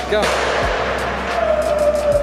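Stunt scooter's wheels rolling fast across a wooden skatepark ramp, a steady whir, with a thin squeal from the wheels coming in about a second and a half in.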